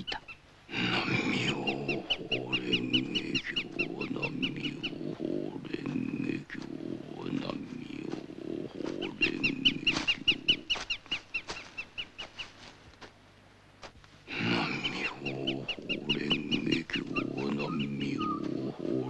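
Low voice chanting rhythmically on one steady pitch. The chant breaks off for about a second and a half near the end, then resumes.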